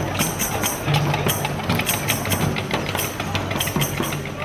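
Percussion-led music: a jingling tambourine and hand-drum strokes in a quick, steady rhythm.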